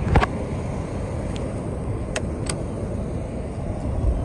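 Steady low rumble of outdoor road-traffic noise, with a few faint clicks.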